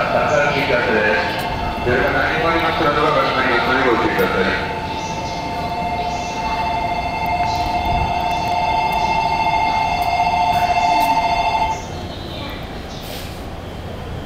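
Electronic platform departure bell ringing steadily with a warbling tone, signalling a train's departure, cutting off suddenly about twelve seconds in; a voice is heard over it at the start.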